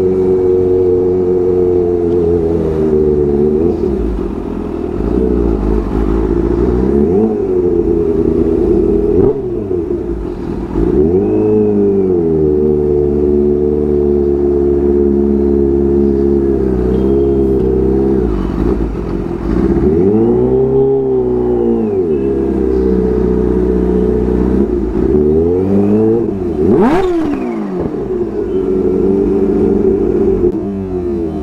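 Kawasaki Ninja H2's supercharged inline-four engine, heard from the rider's seat, revved again and again. Its pitch rises and falls every few seconds between steadier stretches.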